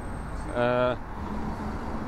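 City bus idling at a stop, a steady low engine rumble, with a man's short drawn-out 'eh' hesitation about half a second in.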